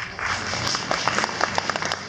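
Audience applause breaking out suddenly and quickly filling in with many overlapping hand claps.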